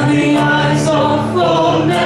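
A praise song sung live by voices with electronic keyboard accompaniment, the melody moving over sustained low chords.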